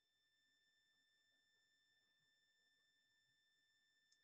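Near silence, with only a very faint steady high-pitched tone.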